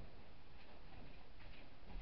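Faint handling and movement noises as a person gets up and moves about: a low thump right at the start and another near the end, with a few light clicks in between.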